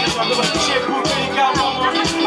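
A live band playing a loud funk and hip-hop groove, with a drum kit keeping a steady beat under keyboards and bass.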